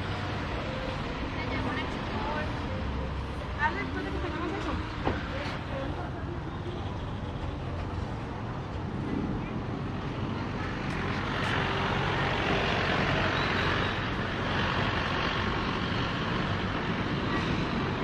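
Street traffic on a busy town road: cars and heavier vehicles passing close by with a steady engine and tyre rumble, louder for several seconds past the middle as a vehicle goes by.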